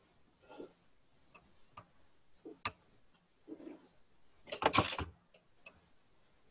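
Scattered light clicks and taps from hands handling a copper-wire coil assembly on a glass tabletop, with a louder rattling clatter of several clicks about five seconds in.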